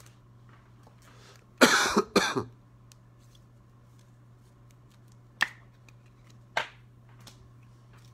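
A man coughs twice in quick succession about two seconds in. A few seconds later come two short, sharp clicks about a second apart, over faint room hum.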